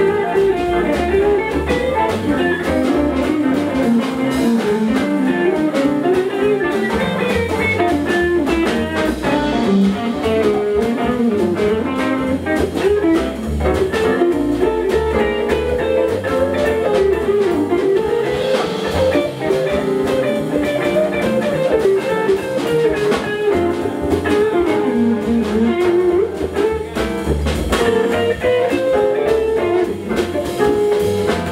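A live jazz-blues band playing, with a semi-hollow-body electric guitar taking the lead line over a plucked upright double bass and drums.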